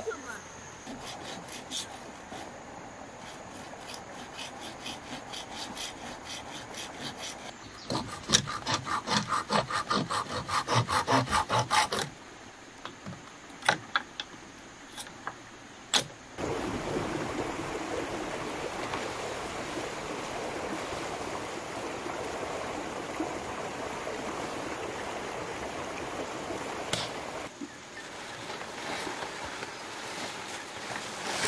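Hand saw cutting bamboo in quick back-and-forth strokes, loudest and fastest from about eight to twelve seconds in, followed by a few sharp knocks. The second half is a steady rustling noise.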